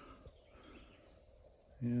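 Steady, high-pitched chorus of insects in summer woodland, a continuous even buzz with no breaks, heard under a pause in talking.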